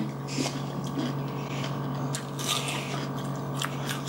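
Close-up chewing of a firm, crisp donut peach: a bite and then irregular crunching and crackly mouth sounds.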